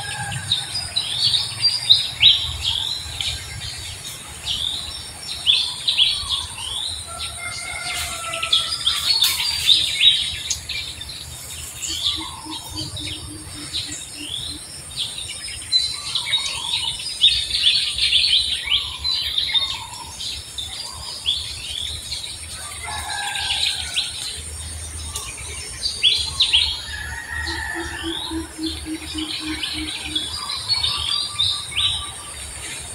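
A busy chorus of songbirds: many short, quick, falling chirps with scattered lower calls, over a steady faint high whine. A low pulsed trill sounds twice, about twelve seconds in and near the end.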